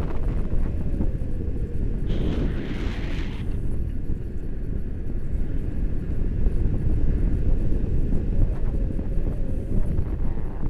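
Wind buffeting a camera microphone during a tandem paraglider flight: a steady low rumble, with a brief brighter rush of air about two seconds in.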